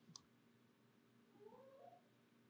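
Near silence: room tone, with one faint click just after the start and a faint rising, wavering tone in the second half.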